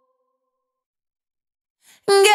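Near silence in an isolated vocal track: the faint fading tail of a held sung note dies away, then a short breath comes just before the end.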